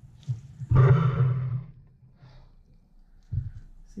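A woman's breathy sigh, about a second long, near the start. A short low thump comes near the end.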